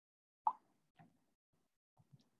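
A short pop about half a second in, then a fainter one half a second later, each cut off quickly.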